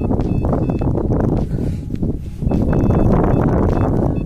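A gloved hand digging into and crumbling loose clods of field soil, a dense crunching rustle close to the microphone. Faint short high beeps from a metal detector come through several times as it picks up a target in the dug earth.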